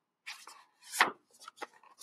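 Rustling and knocking of a book being handled, with one sharp knock about a second in and a few lighter clicks after it.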